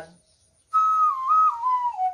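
Suling, an Indonesian bamboo flute, playing a short melodic phrase. It comes in about two-thirds of a second in, holds a high note with a quick step up and back, then glides down to a lower note.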